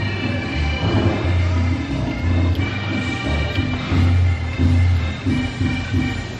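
Background music with a heavy, repeating bass beat and sustained higher tones over it.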